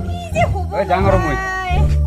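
Speech: a woman talking in an animated voice, drawing one exclamation out long near the end, over low background music.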